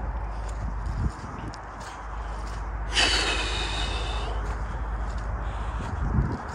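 Wind buffeting the microphone with a steady low rumble. About three seconds in there is a short, loud breath through the nose.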